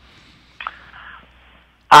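A pause in a telephone conversation: faint line noise, with a brief faint sound just over half a second in. Near the end a man's voice comes in loudly with "uh".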